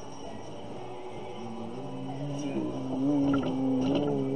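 A man's voice humming low, held notes with slight pitch bends, growing louder over the last two seconds.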